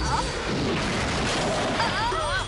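A loud rushing, rumbling cartoon sound effect. A girl's high scream trails off just as it begins, and screaming starts again at the very end.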